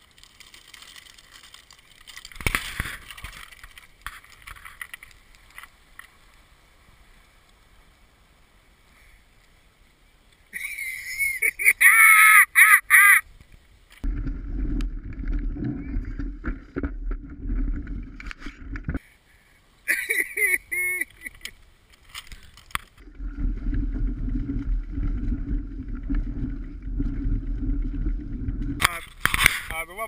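Mountain bike riding through a shallow river: a low rumbling rush of water in two long stretches in the second half, after a quieter start. A loud voice breaks in briefly near the middle.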